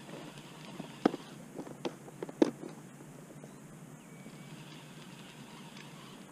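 A few sharp knocks and clicks in the first couple of seconds, from fishing tackle being handled in an inflatable boat, the loudest about two and a half seconds in. After that there is only a quiet, steady open-air background.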